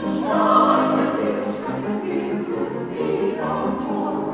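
Women's choir singing classical music together with a mezzo-soprano soloist.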